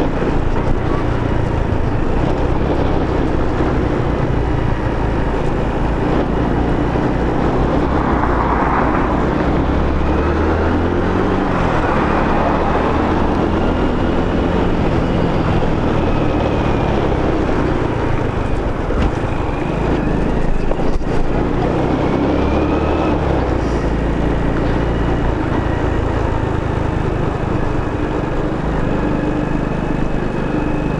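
Honda Biz step-through motorcycle's small single-cylinder four-stroke engine running while riding along in traffic, mixed with steady wind rush on the microphone.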